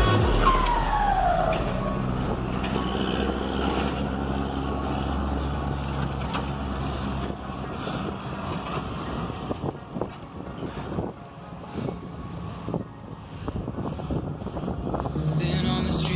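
Mercedes-Benz 1113 truck's diesel engine pulling away, its pitch falling over about a second near the start as the revs drop at a gear change. It then runs on quieter and more unevenly as the truck moves away.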